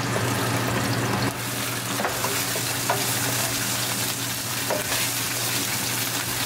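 Ginger, garlic and green chili paste sizzling in hot olive oil with cumin seeds as a wooden spatula stirs it around the pan, with a few light clicks of the spatula. A kitchen exhaust fan hums steadily underneath.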